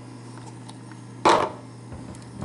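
A single short clunk about a second in from handling the steel thermos and its cup against the counter, over a faint steady low hum.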